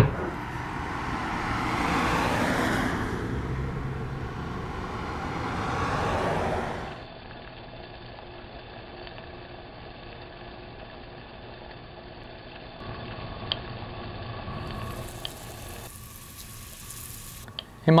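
Car running, heard from inside the cabin: a steady rush of engine and road noise that swells twice. It then cuts off sharply to a faint steady room hum with a couple of light clicks.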